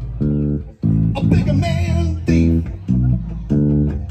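Live hard-rock band playing: electric bass and electric guitar with drums, in a stop-start riff of chord hits that break off and come back in sharply every second or so.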